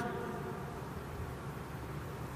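Steady low background hum with hiss: the recording's room tone between spoken phrases, with the last word dying away in the room at the very start.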